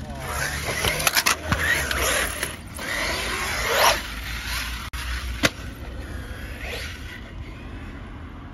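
Traxxas Sledge RC monster truck driving on concrete ramps: its brushless electric motor whines up and down in pitch as the throttle is worked, over a haze of tyre and chassis noise on concrete. Sharp knocks of the truck landing and hitting come in a quick cluster about a second in and once more, loudly, about five and a half seconds in.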